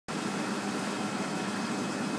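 Steady hiss with a low hum from running machinery, unchanging throughout.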